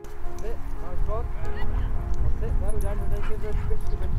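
Dogs yipping and barking in short rising calls over background music with steady held notes.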